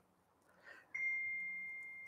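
A single bell-like ding about a second in: one clear high tone that rings on and slowly dies away.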